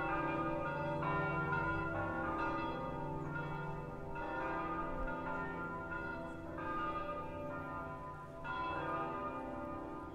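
Church bells ringing: several bells struck in quick succession, their tones overlapping and ringing on.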